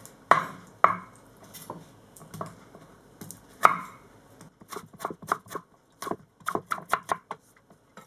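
Chef's knife cutting through an apple onto a wooden cutting board: a few separate sharp strokes in the first half, then a quicker run of chopping knocks in the second half as the apple is diced.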